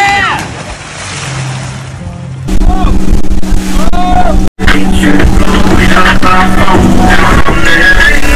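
A short yell and a splash as people jump feet-first off a pontoon boat into lake water; about two and a half seconds in, loud music with a steady beat takes over and carries on.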